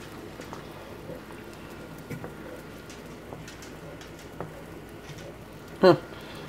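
Watermelon juice boiled down to a thick syrup, bubbling in a pan on an electric stove: a soft steady simmer with many small, scattered pops.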